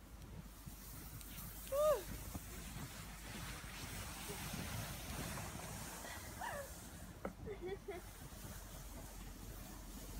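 Steady noise of a plastic sled being towed over snow, with a short high cry about two seconds in and a few more short cries between six and eight seconds.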